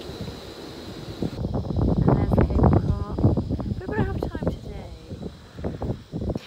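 Wind blowing across the microphone. After about a second and a half the sound cuts to people's voices talking, with wind behind them.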